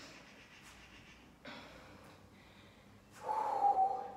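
A woman breathing hard during squats: a short, sharp breath out about one and a half seconds in, then a brief held voiced sound of effort near the end.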